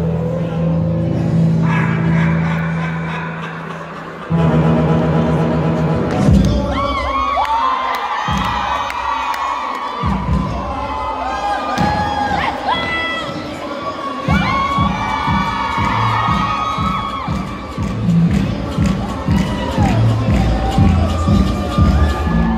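Dance music playing loudly, a held chord at first and then a steady beat, with a crowd of children shouting and cheering over it from about six seconds in.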